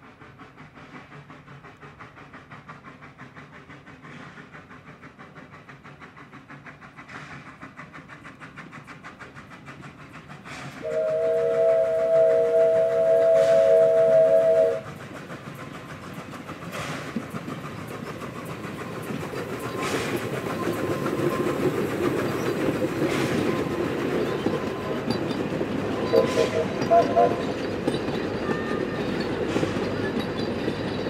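South African NGG16 Garratt steam locomotive No. 129 working up a grade, its exhaust beats slowly growing louder as it approaches, then its steam whistle sounding a steady three-note chord for about four seconds, the loudest sound here. The engine and carriages then roar past with a rising rumble and wheels clicking over rail joints, with a second short whistle near the end.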